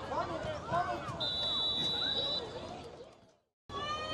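Shouting voices of players and spectators during a youth football play, with a referee's whistle blown once for about a second to end the play. The sound then fades away briefly near the end.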